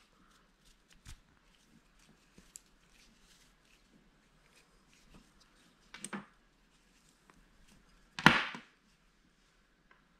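Braided cord being handled and drawn through itself as a knot is worked onto a carabiner, with faint rustles and ticks. There are two short louder rubbing sounds, one about six seconds in and a louder one a little after eight, as the knot is pulled tight.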